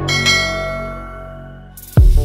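A bell-like notification chime sound effect, struck just after the start and ringing down, fading over about a second and a half.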